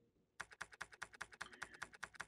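Faint, rapid typing on a computer keyboard, the keystroke clicks starting about half a second in.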